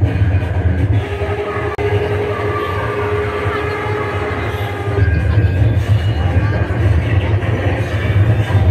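Loud amplified music played through a PA system, heavily distorted, with a constant deep bass and a long held tone that starts about a second in and stops about five seconds in.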